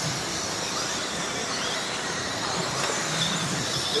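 Several radio-controlled dirt oval late model race cars running laps together, their motors giving a high whine that rises and falls as they go round.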